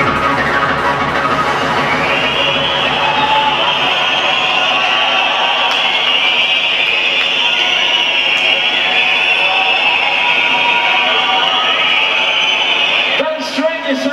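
Loud electronic dance music from a DJ set: a heavy kick-drum beat for the first few seconds, then the beat drops out into a breakdown with a held, high synth line. About a second before the end the music falls away.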